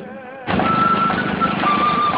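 A small boat engine running, cutting in suddenly about half a second in with a steady low drone, with music playing over it.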